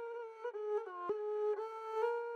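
Sampled kemenche, a Middle Eastern bowed string, playing a single melodic line triggered slice by slice from a keyboard, with Simpler's playback set to Thru, so each slice plays on to its end. The line holds one note and slides between a few nearby notes, with a faint click about a second in.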